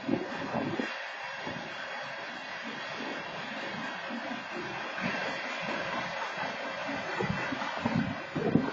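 Freight train cars rolling past, heard through a security camera's microphone: a steady rushing rail noise with frequent irregular low knocks from the wheels.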